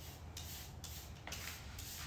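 Hand brush sweeping spilled grains across a laminate floor into a plastic dustpan, in short brushing strokes about two a second.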